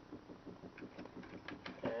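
Faint clicks and light taps of a small brushed RC motor wrapped in a metal mesh mud screen being handled and set down on a workbench, several in quick succession in the second half. A faint steady rapid pulsing runs underneath.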